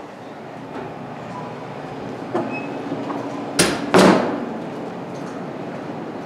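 A door being opened: two sharp clacks about half a second apart, a latch and the door coming free, a little past halfway through, over a steady low room hum.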